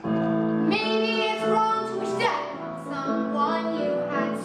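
A teenage girl singing a musical-theatre song solo over piano accompaniment, with long held and bending sung notes; the voice breaks off only briefly right at the start.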